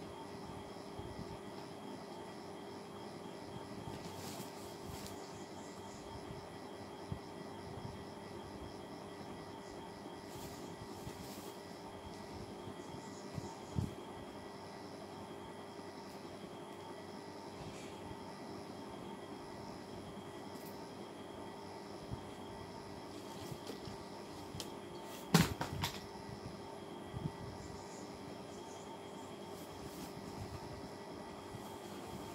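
A steady mechanical hum runs throughout, with a few light knocks and clicks as toys are handled on a bed, and one sharp click about 25 seconds in.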